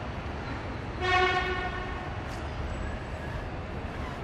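A horn sounds once, a single steady tone lasting about half a second, about a second in, over a low steady background rumble.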